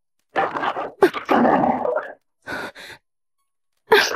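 Cosmetics jars, bottles and lipsticks swept off a dressing table and clattering onto a tiled floor, with a sharp clatter near the end. A woman's distressed vocal sound, a cry or groan, is mixed in.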